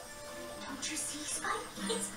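Audio of an animated TV episode playing: background music with a character's voice coming in near the end.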